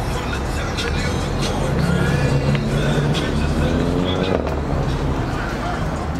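A car engine running close by, a little louder through the middle, amid crowd voices and music.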